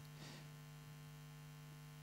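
Near silence: a faint, steady electrical hum under a pause in the speech.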